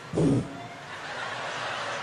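A stand-up comedy audience laughing after a punchline, the crowd noise swelling over the second half, preceded by a brief vocal sound just after the start.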